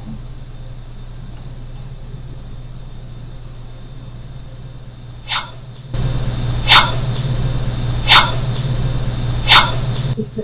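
A single short call sounds faintly about five seconds in, then is replayed three times at boosted volume, about a second and a half apart, over a steady hum and hiss that rise with the boost.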